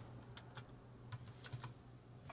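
Faint typing on a computer keyboard: a run of about eight irregular keystrokes.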